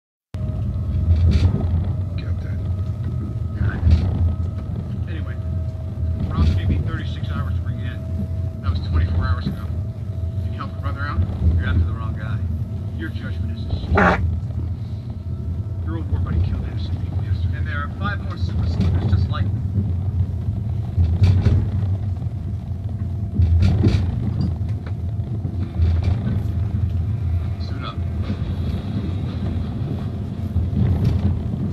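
Steady low rumble of a running vehicle, with a faint steady tone that stops about halfway, and voices talking over it.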